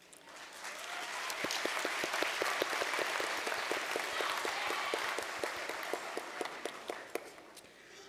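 Audience applause that swells over the first second or so and dies away near the end. Over it, one person claps close to the microphone at a steady rhythm of about five claps a second.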